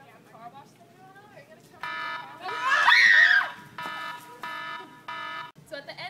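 An electronic alarm buzzer sounding in short repeated blasts from about two seconds in, the warning signal for an atomic-bomb attack. Around the three-second mark a loud scream rises and falls over it.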